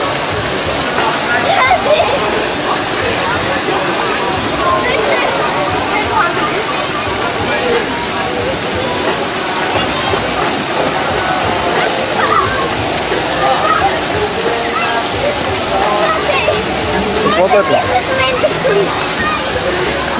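Steady rush and splash of water at a busy water park, with a crowd of indistinct voices and shouts throughout.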